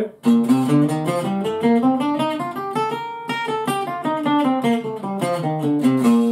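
Acoustic guitar playing a scale one picked note at a time, climbing for about three seconds and then coming back down.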